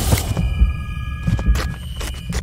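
Sound design for an animated logo sequence: deep pulses about twice a second under sharp clicks and a few held high tones.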